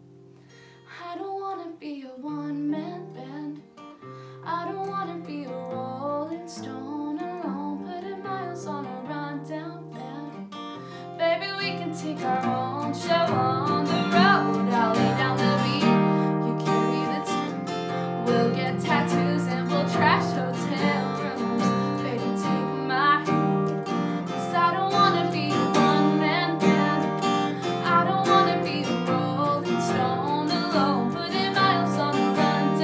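A woman singing while playing a steel-string acoustic guitar. The guitar starts softly, then about eleven seconds in it jumps to louder, fuller strumming under her voice.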